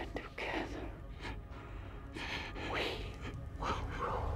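Heavy, breathy gasps and exhales from two people kissing closely, coming in several short swells, over a low steady hum.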